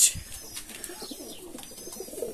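Fantail pigeons cooing softly, low wavering coos.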